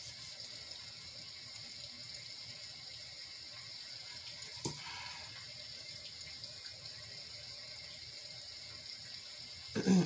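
Rain sound from a white-noise sound machine, a steady, even hiss. A single light knock comes about halfway through.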